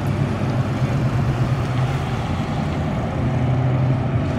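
Car engine running with a steady low hum and road noise, heard from inside the car.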